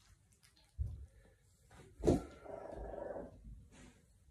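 A four-week-old American Bully puppy gives a short pitched cry lasting about a second, a little past halfway, after a soft thump of handling about a second in.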